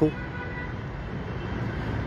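Steady background city traffic noise, with a faint brief high tone about half a second in.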